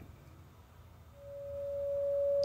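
A steady, pure sine-wave tone from oscillator two of a Synthesizers.com Q169 Oscillator++ synthesizer module fades in out of near silence about a second in, growing louder as its amplitude knob is turned up. It holds one pitch throughout, with no vibrato yet.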